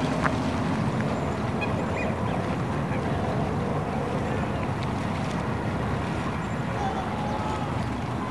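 Steady low outdoor rumble picked up by a camcorder microphone, with faint distant voices now and then.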